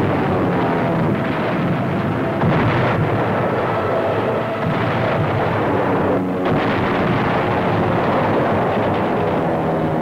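Newsreel sound-effects track of an air bombing raid: a continuous loud rumbling roar of explosions, with sustained droning tones underneath that shift pitch a few times.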